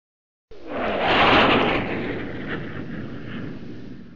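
Whoosh sound effect for a logo intro: a rushing, wind-like swell that starts suddenly about half a second in, is loudest at about a second and a half, then slowly fades. A low tone slides downward under its start.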